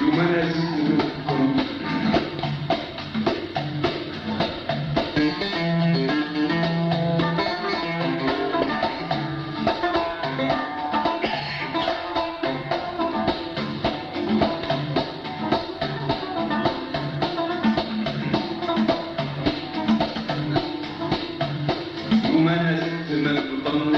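Instrumental passage of Arabic traditional song played live by an ensemble: plucked string instruments carry a busy melody over steady percussion, with no singing.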